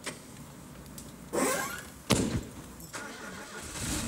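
Car doors shut, the sharpest slam about two seconds in, then the car's engine starts and runs.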